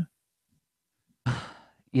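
A man's sigh into a close-up microphone: a breathy exhale starting a little over a second in and fading away within about half a second, after a silent gap.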